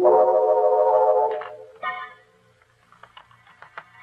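Organ music bridge: a held chord that fades out about a second and a half in, followed by a short higher chord, then faint scattered clicks.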